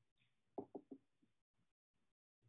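A quick run of three soft knocks or taps about half a second in, with a fainter fourth just after, over near silence.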